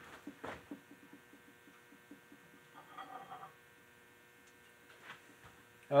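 Quiet room tone with a faint, steady electrical hum, a few soft clicks and knocks, and a brief faint tone about three seconds in.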